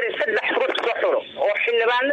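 Speech only: a voice talking in Somali, narrating news. It sounds thin, like a phone or radio, with little above about 4 kHz.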